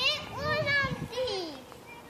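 Children's voices on a playground: high-pitched calling and chatter that fades out near the end.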